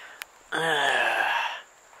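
A man's long, voiced sigh, falling in pitch, starting about half a second in and lasting about a second, just after a short sharp click.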